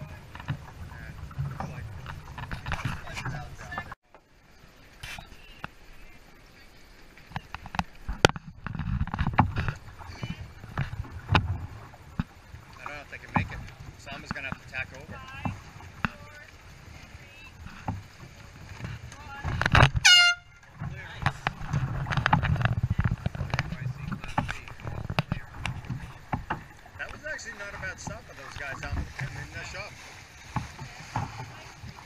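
Water slapping along a boat's hull, wind, and indistinct voices. About two-thirds of the way through comes one short, loud air horn blast whose pitch sags as it ends, a sound signal from the race committee boat.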